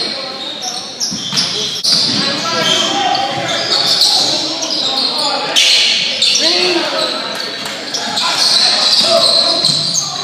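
Basketball game sounds in a gymnasium: a ball bouncing, sneakers squeaking on the hardwood floor and players calling out, all echoing around the large hall.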